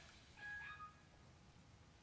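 Near silence: room tone, with one faint, short pitched sound about half a second in.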